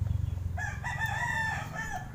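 A rooster crowing once, a call of a little over a second starting about half a second in, over a steady low hum.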